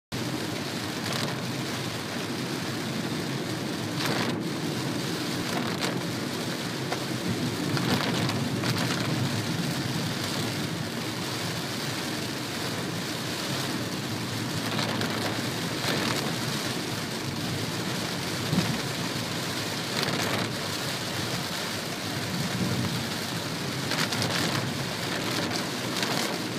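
Heavy rain beating on the roof and windscreen of a moving vehicle, heard from inside the cabin: a steady wash of noise with occasional brief louder spatters.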